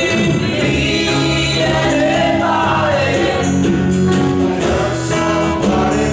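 Live band music: several voices singing together over acoustic and electric guitars and hand drum.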